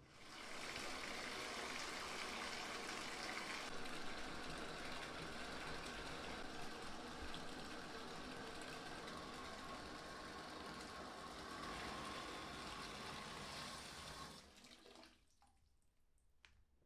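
Water pouring from a bathtub spout into a partly filled tub, a steady rushing splash that fades out about a second and a half before the end as the flow stops.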